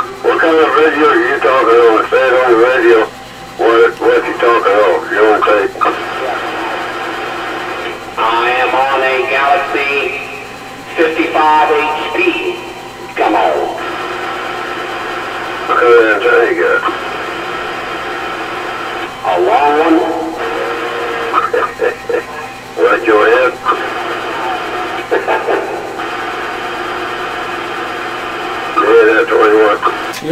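Voices over a Kraco CB radio's speaker, thin and narrow-band and too garbled to make out, in several separate transmissions. Between them the receiver gives a steady noise.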